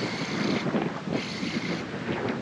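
Wind buffeting the microphone with the wash of shallow water, in two stronger gusts.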